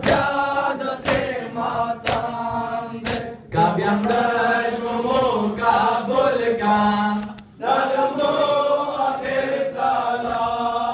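Men's voices chanting a Pashto noha mourning lament, with a short pause near the end between lines. About once a second through the first three seconds, the chant is marked by sharp beats of hands striking bare chests in sina zani.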